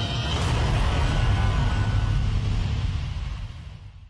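Television ident stinger: cinematic music with a heavy, deep rumble that starts suddenly and fades out near the end.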